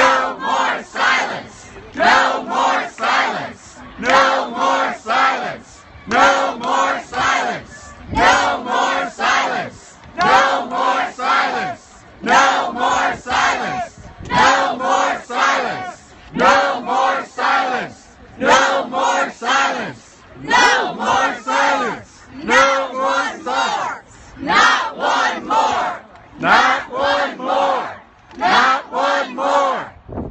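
Protest crowd chanting a short slogan in unison, led by a woman shouting, repeated over and over about every two seconds.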